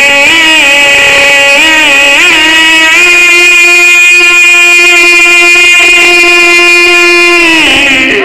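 A man's voice chanting loudly into a microphone in the sung style of a zakir's majlis recitation: a few wavering melodic turns, then one long steady high note held from about three seconds in, which falls away just before the end.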